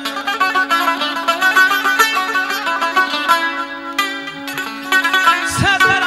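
Azerbaijani wedding-band instrumental music: a plucked-string instrument plays fast runs of notes over a steady held tone, and low drum beats come in about five and a half seconds in.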